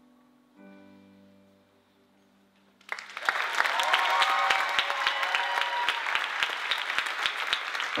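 The accompaniment's last soft chord fades out at the end of a song, then about three seconds in an audience breaks into loud applause with cheering.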